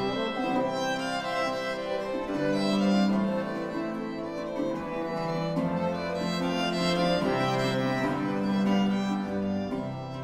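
Instrumental baroque chaconne in C major for four parts: bowed strings playing sustained melodic lines over a bass line that moves to a new note every second or two.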